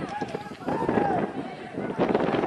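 Shouted voices calling across a football pitch during play, with one long, loud call about a second in.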